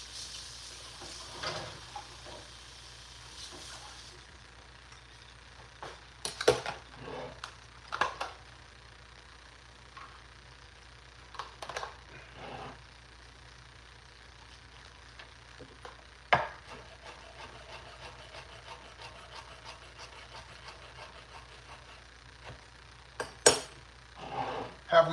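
Scattered kitchen handling noises: light knocks, taps and clatter of utensils and items set down on the counter and a wooden cutting board, a second or several apart, with a soft hiss in the first few seconds over a low steady hum.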